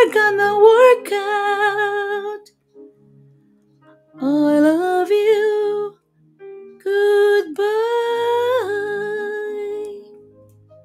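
A woman singing long, held wordless notes with vibrato, in three phrases with short pauses between them, the last one rising in pitch and then settling.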